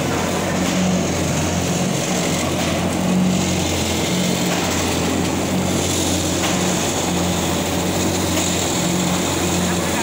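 Paper reel-to-sheet cutting machine running steadily: a loud, even mechanical hum as the paper web feeds through its rollers.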